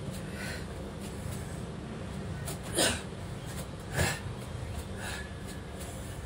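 A man's two sharp, forceful exhales of exertion, about a second apart near the middle, as he does knee-hop jumps. A steady low hum runs underneath.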